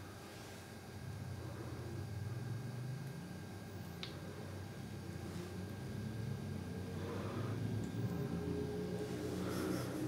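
Distant engine of a small motor vehicle outside, a low drone that slowly grows louder with a wavering pitch; it sounded like a four-wheeler, and a neighbour's car was the other guess.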